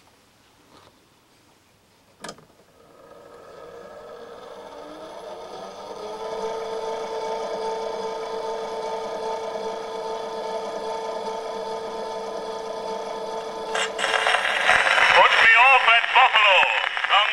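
1899 Edison Concert cylinder phonograph started with a click, its spring-driven motor and mandrel spinning up in a rising whine that settles into a steady running hum. Near the end another click as the reproducer meets the cylinder, and the recording's surface noise and spoken announcement start through the horn.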